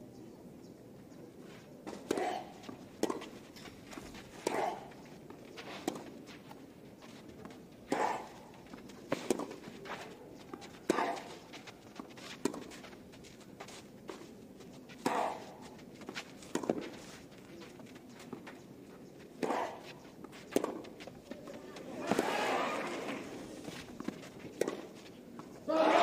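Tennis rally on a clay court: tennis balls struck by rackets about every second or so, many shots with a short grunt from a player. About 22 seconds in, the crowd cheers as the point ends.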